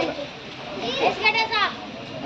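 Children's voices from a seated crowd, with one child's high-pitched call rising and falling about a second in.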